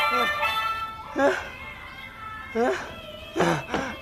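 A person crying out in short wails, each falling sharply in pitch, four or five times. Sustained music fades out in the first second.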